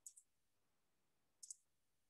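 Near silence with faint, short high-pitched clicks: a double click at the start and another double click about a second and a half in.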